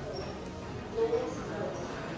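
Background chatter of passers-by talking, no single voice clear, with one voice louder about a second in.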